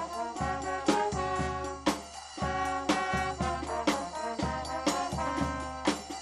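A brass band playing together: saxophones, clarinet, trumpets and trombones over a sousaphone, with snare drum and a bass drum with cymbal. The drums land accented hits about once a second under the horns.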